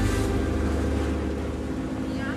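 A boat's engine running steadily, heard on board with wind and water noise over it.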